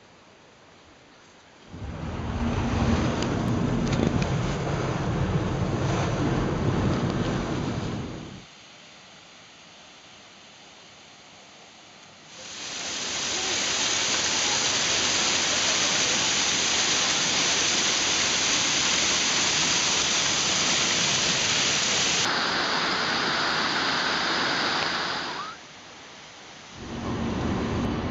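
Waterfall pouring onto rocks and into a pool: a loud, steady rush of falling water lasting about thirteen seconds through the middle. Before it, a shorter stretch of rushing noise with a heavy low rumble, from about two to eight seconds in, and near the end the steady road rumble of a car cabin begins.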